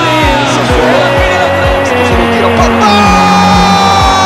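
Background pop music with a fast, steady kick-drum beat, under long tones that glide slowly downward in pitch.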